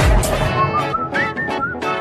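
Pop song playback: a heavy kick-drum beat drops out about half a second in, leaving a whistled melody over a guitar-led accompaniment.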